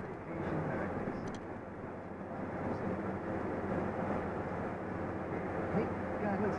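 Steady engine and road noise heard from inside a vehicle cab driving at highway speed.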